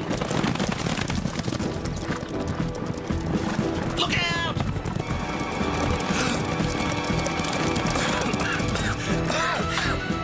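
A herd of brumbies (wild horses) galloping, with hoofbeats and whinnies over dramatic music. One clear falling whinny comes about four seconds in, and more calls come near the end.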